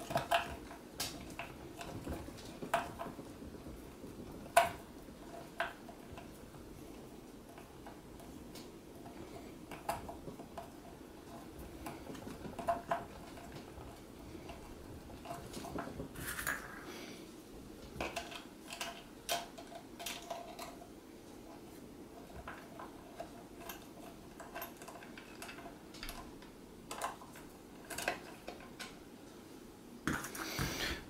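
Irregular light clicks and clinks of a screwdriver working a screw out of the clear plastic collar of a B9 robot, metal tapping on plastic. A few sharper clicks come near the start and about four and a half seconds in.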